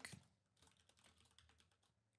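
Faint computer keyboard typing: soft, quick key clicks.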